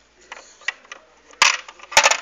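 Small plastic Barbie play-set kitchen pieces clicking and clattering as they are handled and set down, with a sharp clack about one and a half seconds in and another at the end.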